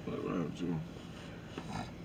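A faint, brief voice in the first second or so, then low, even background noise.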